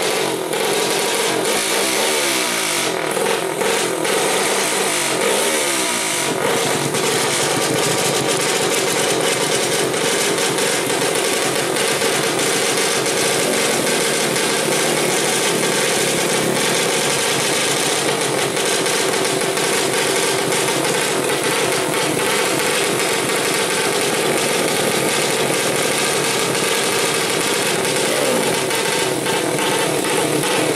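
Modified four-stroke 120cc underbone motorcycle engines revving hard through racing exhausts. The revs rise and fall repeatedly for the first six seconds or so, then hold steady at high rpm.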